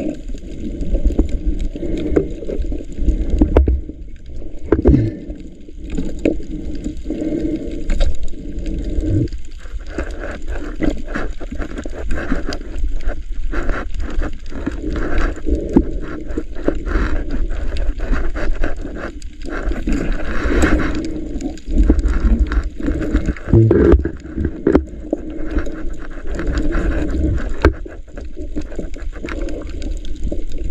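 Underwater sound picked up by a camera held below the surface: a steady, muffled rumble of water moving against the housing, with many sharp clicks and knocks as the gear is handled.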